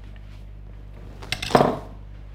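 Steady low hum of room tone, broken by a brief clatter about one and a half seconds in.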